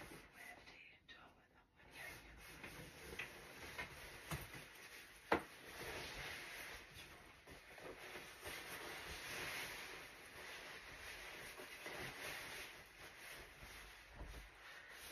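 Fabric rustling as a long quilted puffer coat is pulled on and settled over the shoulders, with one sharp click about five seconds in.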